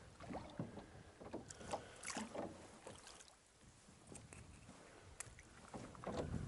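Oars of a small rowboat dipping and pulling through the water: faint, irregular splashes and knocks at the strokes, quieter in the middle, with one sharp click near the end.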